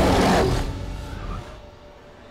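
A giant wolf's snarling roar, a film sound effect, loud at the start and dying away over about a second and a half.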